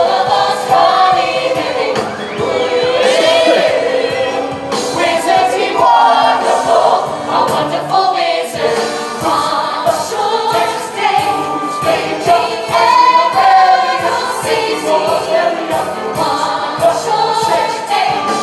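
Musical theatre ensemble chorus singing with a full pit orchestra, the many voices and instruments running together at a steady loud level.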